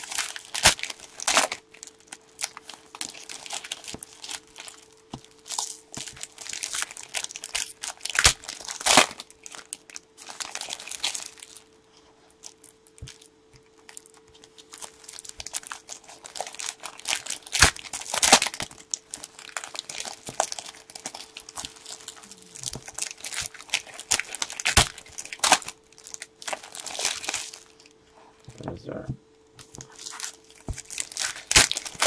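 Foil wrappers of Panini Select soccer card packs crinkling and tearing as they are ripped open and handled, a run of sharp crackles in clusters with a couple of brief quieter spells.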